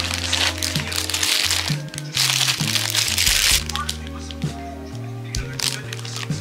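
Plastic mailer bag crinkling and rustling as hands dig through it, densest in the first three and a half seconds and then in sparser crackles. Background music plays under it.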